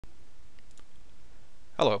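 A few faint clicks of a computer mouse over low steady background noise, then a man's voice says "Hello" near the end.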